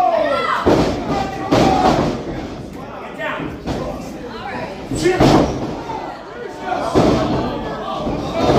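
Wrestling ring impacts: several loud thuds of wrestlers' bodies hitting the ring, one about a second in and the heaviest around five seconds in. Spectators shout and call out over them.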